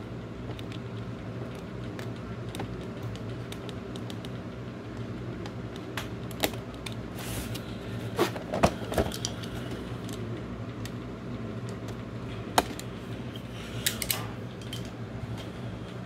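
Cardboard box being handled: scattered small clicks, scrapes and a few sharper knocks as the tape is slit with a utility knife and the box is turned over, over a steady low hum.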